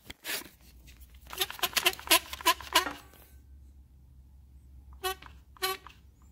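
Hand clamp and camera being handled: a click, then a quick run of clicks and squeaks about a second in, and two short squeaks near the end.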